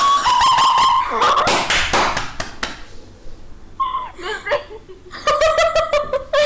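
Young women laughing and giggling in surprise, opening with a high-pitched squeal about a second long, then breathy laughter and more giggling near the end.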